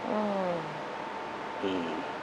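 A man's thinking hums: a long "hmm" falling in pitch, then a short "mm" near the end.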